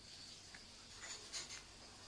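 Faint scratching of a felt-tip marker pen drawn across paper, a few short strokes about a second in.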